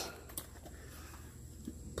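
Quiet background: a faint low hum and hiss, with a faint tick about a third of a second in and another near the end.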